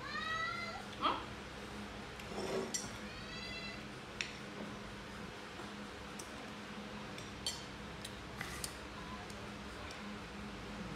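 Pet macaque giving two high-pitched calls, one rising at the very start and another about three seconds in, with a few light clinks of a spoon against a dish.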